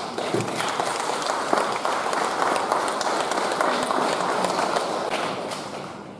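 Audience applause: many hands clapping, starting abruptly and tapering off near the end.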